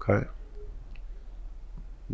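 A man's spoken word ending just as it begins, then a pause of quiet studio room tone with a steady low hum.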